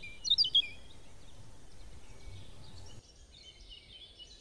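Birds chirping in short, quick, high calls during the first second over a faint background hiss. The background drops lower about three seconds in, and a few faint chirps return near the end.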